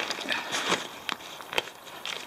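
Rustling and crinkling of an ultralight backpack's fabric as it is lifted and its top opened, with a few sharp ticks.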